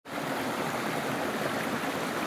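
Mountain stream running over rocks: a steady rush of water.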